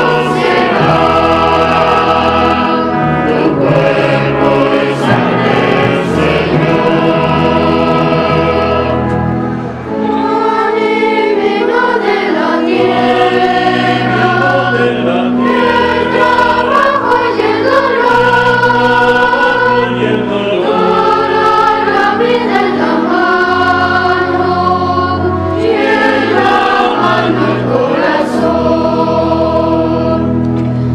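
A choir singing a hymn, held sung phrases over sustained low notes.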